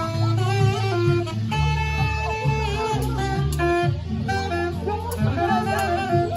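Saxophone playing a melody of held notes over backing music with a steady bass line.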